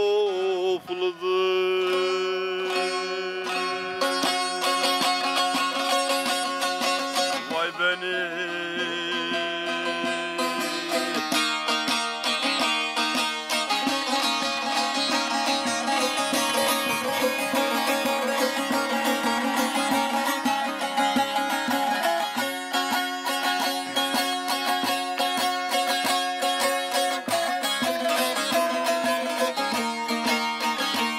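Solo long-necked bağlama (saz) playing a fast, densely plucked and strummed instrumental passage of a Turkish folk song, with a sung note trailing off in the first second.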